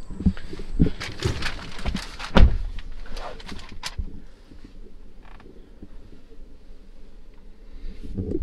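Knocks, clicks and rustling as someone climbs into a pickup's driver's seat with a camera in hand, with one loud low thump about two and a half seconds in; after about four seconds only faint, scattered handling sounds remain.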